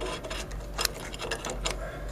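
Irregular small clicks and scrapes of metal and cardboard as an old capacitor block is worked out of its metal can, with one sharper click a little under a second in.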